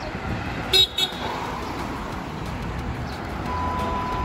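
Steady road traffic with two short car-horn toots about a second in. A steady single-pitch beep starts near the end.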